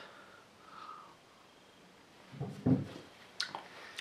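A man sipping beer: quiet for the first two seconds, then a short breath out through the nose a little over two seconds in, and a couple of small mouth clicks near the end as he tastes it.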